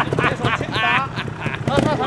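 Trials motorcycle engine puttering at low revs with irregular popping and knocks as the bike picks its way up a rock step, with a voice over it in the first half.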